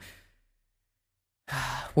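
Dead silence for about a second, then a man's breath into a close podcast microphone, about half a second long, just before he speaks.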